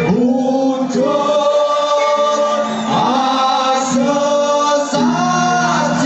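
Javanese gamelan music accompanying a kuda kepang dance, with a group of voices singing long, held lines in unison; a new phrase starts about every one to two seconds.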